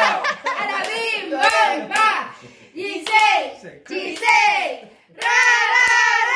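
Family voices, adults and a child, singing a birthday song, with drawn-out falling phrases and a long held note starting about five seconds in.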